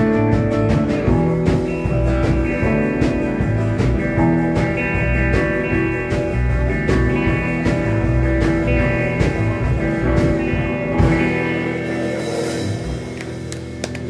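Live rock band playing an instrumental passage without vocals: electric and acoustic guitars, bass guitar and drum kit keep a steady beat. About eleven seconds in, the bass and drums drop away and a brief cymbal wash rings over the guitars.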